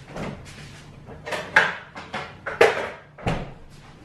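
Off-camera knocks and clatters of a cupboard door and items being moved about as a small ketchup bottle is fetched, the loudest two about one and a half and two and a half seconds in, with a dull thump near the end.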